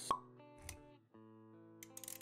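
Intro sound effects over sustained background music: a sharp, ringing pop just after the start, then a softer hit about two thirds of a second in, with the music briefly dropping out near the one-second mark before resuming.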